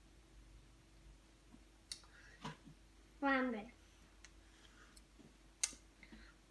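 A child eating potato chips and licking his fingers: a few sharp, separate mouth clicks and smacks, with a short vocal sound falling in pitch about three seconds in.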